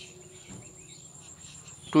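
Faint, steady background noise with a thin, high-pitched continuous tone, heard in a pause in the speech.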